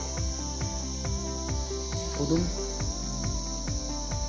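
Background music with a steady beat of about three to four low thumps a second and held notes, over a steady high-pitched insect drone.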